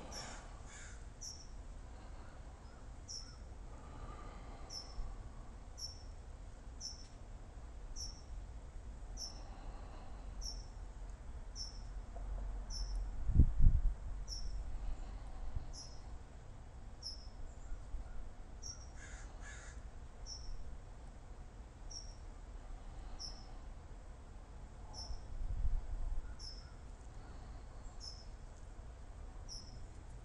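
A short, high animal chirp repeating steadily about once a second, over a faint low rumble, with one loud low thump near the middle.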